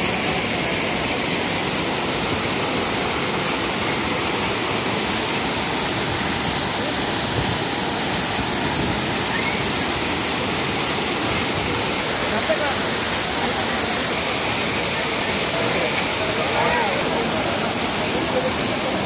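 Waterfall pouring over rocks: a steady, unbroken rush of water. Voices of a crowd are faintly heard under it, more so near the end.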